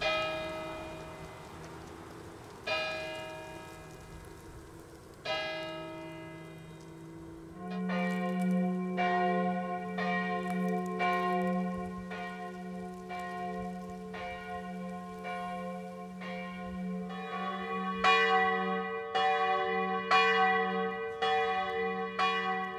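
Church bells: a single bell strikes three times, slowly, each stroke left to ring out; about eight seconds in, several bells start ringing together in a steady peal, and another bell joins a few seconds before the end.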